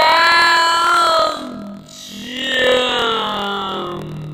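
A young boy's voice singing two long held notes: the first runs for nearly two seconds, and the second starts about two seconds in and fades near the end.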